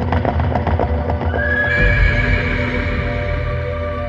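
Horse hooves clip-clopping in a quick run of beats, then a horse whinnying with a falling cry about a second and a half in, laid over a sustained ambient music drone.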